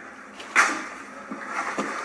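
A plastic snack bag rustling as a hand reaches into it, with one short, louder crinkle about half a second in.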